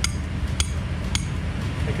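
A hammer striking a metal ground peg three times, about half a second apart, each blow ringing. The peg is being driven in to anchor an inflatable bouncy castle.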